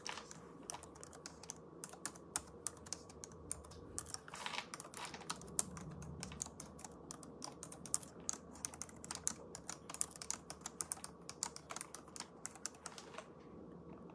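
Typing: a quick, irregular run of sharp key clicks, several a second, that stops about a second before the end, with a brief rustle a few seconds in.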